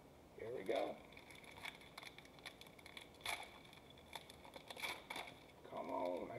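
Foil wrapper of a Mosaic football card pack crinkling and tearing as it is opened by hand, a run of short, sharp crackles. A man's voice is heard briefly about half a second in and again at the very end.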